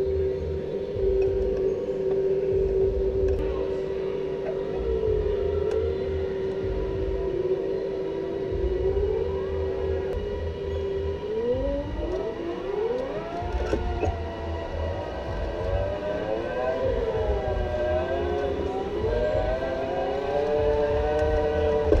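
Electric go-kart motors whining. One steady whine holds for about the first ten seconds, then several overlapping whines rise and fall in pitch as karts pull away.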